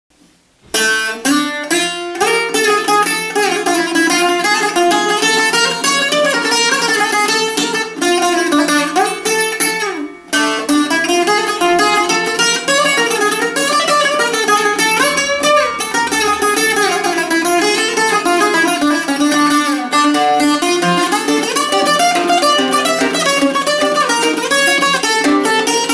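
Greek bouzouki played with a plectrum: a quick, continuous melodic line of plucked notes that starts just under a second in, with a short break about ten seconds in.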